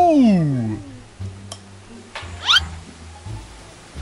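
Comic sound effects. The first is a long pitch slide that falls steeply over about a second, and the second is a short, quick upward whistle-like slide about two and a half seconds in. A soft music bed plays underneath.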